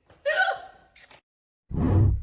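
A woman's short gasp a quarter second in. Then, after a brief silence near the end, the short bass-heavy hit of the TikTok end-screen sound.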